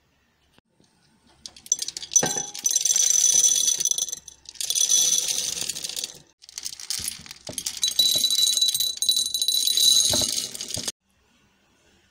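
Small dry dog kibble pellets poured from a metal tin into ceramic dog bowls, a loud rattling patter in several pours with short breaks between them. It stops about a second before the end.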